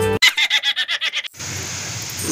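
A short, rapid giggling laugh lasting about a second, cut off by a steady hiss.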